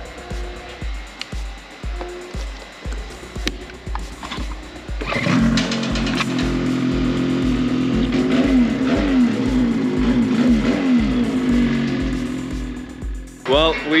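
A 2022 Ski-Doo Summit 850 Turbo snowmobile's two-stroke twin engine catches about five seconds in and runs with repeated throttle blips, its pitch rising and falling. This is a first start after a Bikeman Stage 2 performance kit and tune was installed. It stops shortly before the end, over background music with a steady beat.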